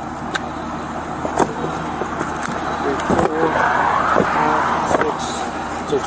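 Steady low vehicle hum with a swell of road noise from a passing car a little past the middle, and several light knocks and rustles from duct-taped packages being handled in a cardboard box.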